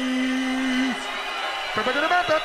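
An MC's drawn-out shout on the microphone, holding one low note that stops about a second in, over a drum and bass mix.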